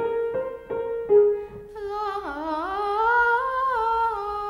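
A few single notes of a short tune played on a piano, then a boy's voice singing the phrase back by ear, its pitch dipping low and then climbing back up in steps: an ear test for a boy treble.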